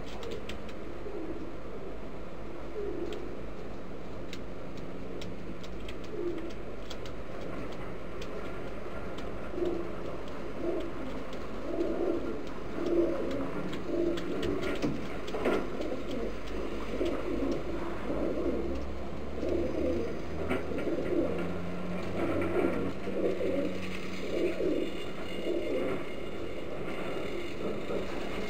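Homing pigeons cooing: repeated low, warbling coos that become frequent from about ten seconds in, over a steady low hum, with a few faint clicks.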